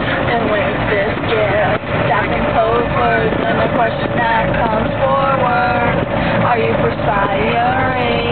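Girls' voices in long, drawn-out, wavering calls and held notes, over a steady rumble of wind on the microphone in a moving open cart.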